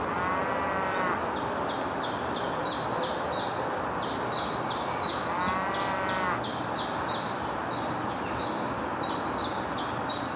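Cattle mooing twice, each call about a second long, over steady outdoor ambience with rapid high-pitched chirping throughout.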